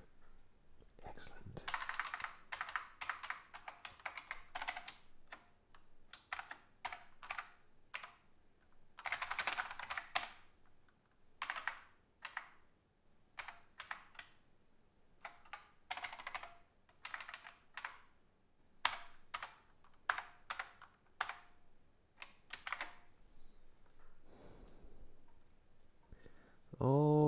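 Typing on a computer keyboard: several runs of rapid keystrokes with pauses and single key taps in between.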